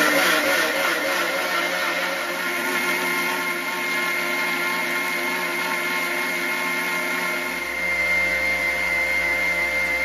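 Electric mixer grinder running steadily with a constant motor whine, grinding soaked rice into batter in its stainless-steel jar. It gets a little louder in the last couple of seconds, then stops at the end.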